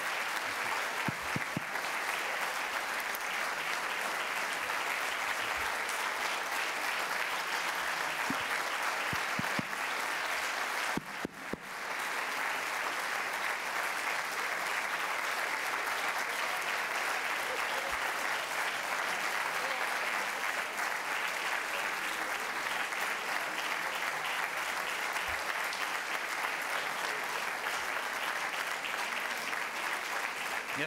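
A large audience applauding steadily and at length, with a brief dip about a third of the way through.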